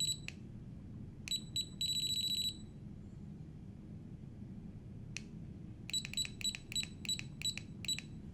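Electronic key-press beeps from the button panel of a Nitto Kohki brushless electric screwdriver controller as a parameter value is set. One short beep comes at the start. Two more short beeps and a longer one follow about a second in, then a single click near the middle, then a run of about eight short beeps, roughly four a second, as the value is stepped down.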